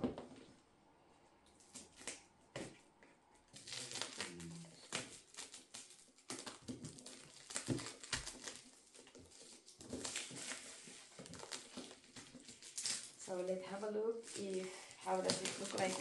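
Black plastic film wrapping on a parcel box being picked at and pulled open by hand: irregular crinkling and crackling in short spurts, starting a few seconds in. A voice comes in near the end.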